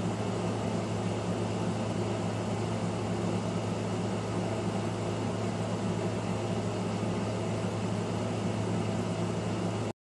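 Steady low hum with an even hiss and no distinct events: indoor room background noise. It cuts out to silence for a moment just before the end.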